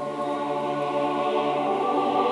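Mixed choir singing sustained chords, coming in at the start and growing louder over the first second.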